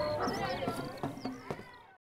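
Children's voices shouting and squealing at play, with short high-pitched calls, fading out over the last second.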